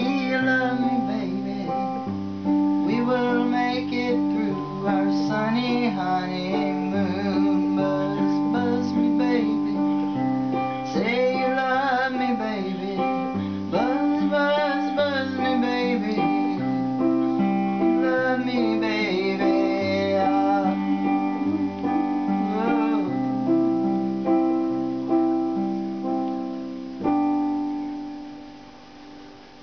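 Electric keyboard playing sustained chords over a stepping bass line, with a woman's voice gliding above it in long notes without clear words. A last chord is struck near the end and fades out as the song finishes.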